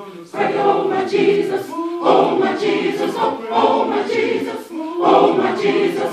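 Gospel choir of men and women singing together in full voice, in swelling phrases about a second and a half apart.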